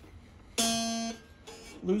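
A single steel string on a vintage McSpadden scrollhead mountain dulcimer, plucked once about half a second in, rings for about half a second and fades. The string is being slackened at its tuning peg during restringing.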